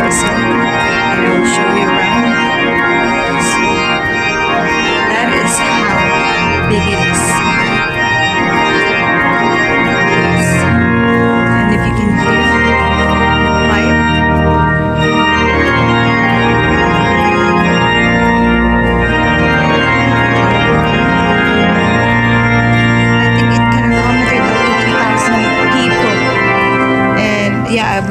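Church pipe organ playing slow, sustained full chords over held bass notes that change every few seconds.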